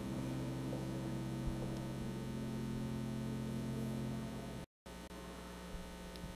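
Steady electrical mains hum on the audio feed, with a few low tones held unchanged. It cuts out completely for an instant near the end, then resumes a little quieter.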